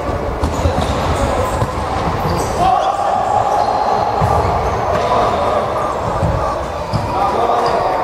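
A futsal match in an echoing sports hall: the ball thudding off feet and the wooden court floor, short squeaks from players' shoes, and shouting and chatter from players and spectators.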